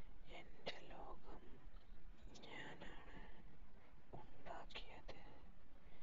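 A person whispering in short, breathy phrases.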